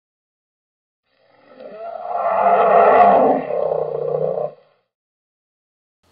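Intro sound effect over a black screen: one sustained, rough sound that swells up over about a second, holds, and cuts off sharply about four and a half seconds in.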